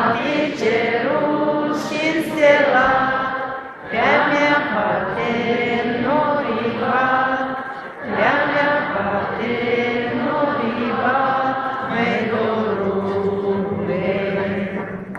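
A hall full of people singing a Moldovan folk song in unison with the singer, unamplified because the power has failed. The singing comes in long sung phrases with short breaks about every four seconds.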